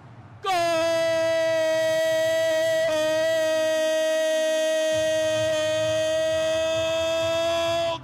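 A Portuguese-speaking football commentator's drawn-out goal cry: one loud note held for about seven and a half seconds after a quick breath, the traditional long "gol" shout for a goal just scored.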